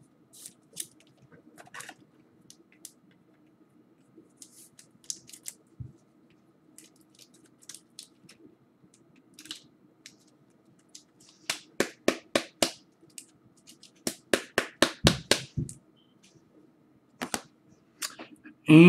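Hands handling a trading-card pack: scattered soft clicks and rustles, then two runs of sharp crinkling crackles in the second half, as the foil pack wrapper is torn open and crumpled.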